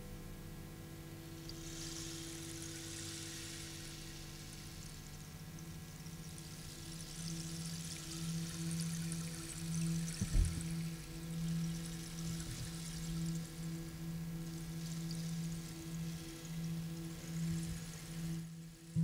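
Quiet, ambient band intro: a held low note that begins to pulse in volume partway through, under slow swells of shimmering cymbal wash, with a single low thump about ten seconds in.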